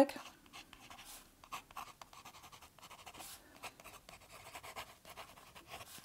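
Fine (F) nib of a Platinum Preppy fountain pen scratching across sketchbook paper as handwriting is put down: a run of short, faint, irregular scratches.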